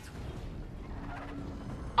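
Film soundtrack from a Batmobile car-chase scene: a steady low rumble of the armoured car driving through a tunnel, with a faint held note coming in about halfway.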